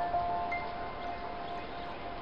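Soft background music of chime-like held notes that slowly fade away.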